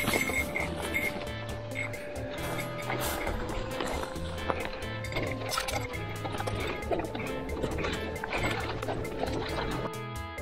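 Background music with a steady bass line. Beneath it are irregular footsteps and clicks of trekking poles from hikers walking a dirt forest trail.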